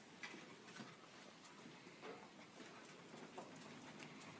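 Near silence, with a few faint scattered clicks and rustles from a dog searching among clutter on a concrete floor.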